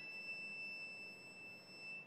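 A Stradivari violin holding a single very high, pure note after a rising run, fading slowly over about two seconds.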